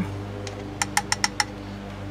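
Five quick, light metallic taps about a second in, as the aluminium cup of a hand coffee grinder is knocked against a moka pot's funnel filter basket to shake the grounds out, over a steady low hum.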